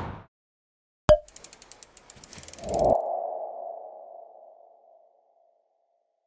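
Logo sting sound effect: a sharp click, a quick run of ticks, then a swell into a ringing ping that fades out over about two seconds.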